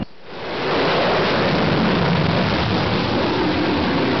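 Wind blowing on the microphone: a steady rushing noise that swells in over the first second and then holds.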